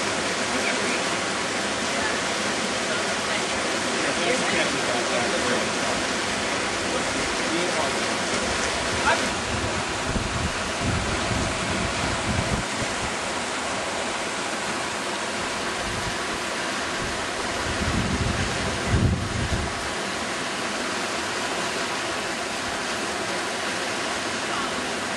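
Steady rush of a fast mountain river's whitewater rapids. Low wind buffeting on the microphone comes in around the middle and again near the end.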